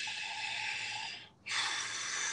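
A man breathing audibly close to the microphone while he thinks: two long, hissing breaths with a short break between them.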